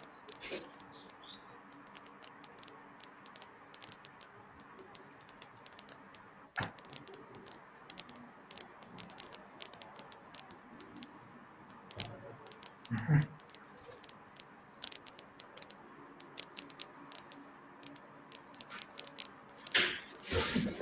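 Scattered light computer mouse clicks, irregular and growing busier in the second half, over a faint steady hum. A brief low thump about thirteen seconds in is the loudest sound.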